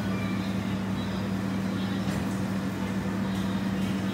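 A steady low mechanical hum that holds one even pitch throughout, over a faint background hiss.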